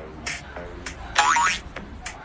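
A cartoon 'boing' sound effect, a quick sweep rising in pitch about a second in, over faint background music.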